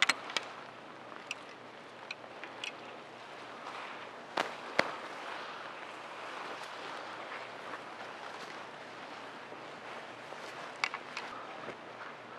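Scattered light clicks and knocks of a bundle of step-in fence posts tapping together as they are carried, over a steady, fairly quiet outdoor hiss. The sharpest knocks come twice around four and a half seconds in, and a few more come near the end.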